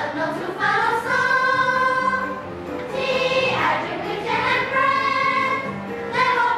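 A children's choir singing an English song together, holding long notes that change pitch every second or so.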